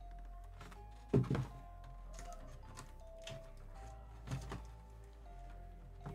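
Background music with two dull thunks, the louder about a second in and a softer one a few seconds later, from a cardboard comic box being opened and handled.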